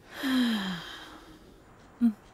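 A woman sighs once, a breathy exhale of about a second with her voice falling in pitch, at the start.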